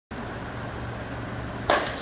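A bat striking a ball on a swing: one sharp crack with a short ring near the end, over a steady low hum.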